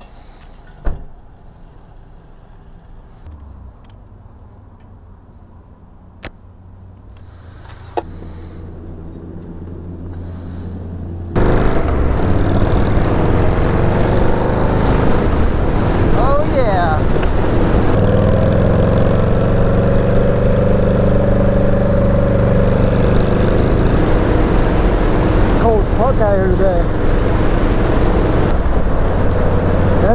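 A quiet opening stretch with a few sharp clicks and a low hum that grows louder, then, suddenly about eleven seconds in, a Harley-Davidson Sportster 883's air-cooled V-twin under way on the road, its low engine note mixed with loud wind noise. Its pitch rises and falls slightly in the middle of the ride.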